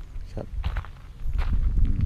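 A few irregular footsteps on a gravelly dirt road, over a low rumble.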